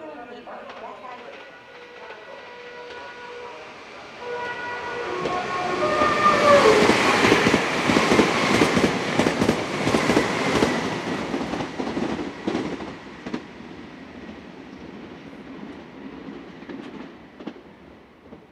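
A Meitetsu express train's musical horn sounds its melody in sustained tones as the train approaches, and drops in pitch as it reaches the platform about six seconds in. The train then rushes through the station at speed with loud rapid wheel clatter over the rail joints, fading as it moves away.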